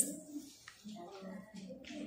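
Several people talking indistinctly in a small room, opening with a single sharp click.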